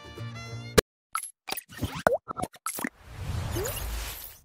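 Animated logo sound effects: background music ends on a sharp hit, then a quick run of short pops with little pitch glides, followed by a swelling whoosh with a low rumble for about a second near the end.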